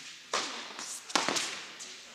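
Two sharp tennis ball impacts, racket strokes and bounces, about a second apart. Each one rings on in the echo of a large indoor tennis hall.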